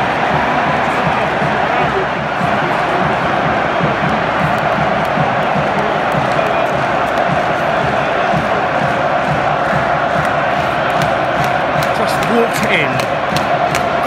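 Football stadium crowd cheering a goal: a dense, steady roar of many thousands of voices, with scattered sharp claps near the end.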